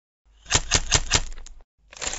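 Logo-animation sound effect: a quick run of sharp clicks, about eight a second, lasting just over a second, followed near the end by a short hissy swish.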